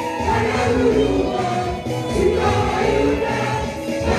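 Live gospel praise music: a group of voices singing together through microphones over a steady, repeating bass beat.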